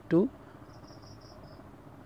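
A single short spoken word, then low background hiss with a faint insect chirp of about five quick high-pitched pulses near the middle.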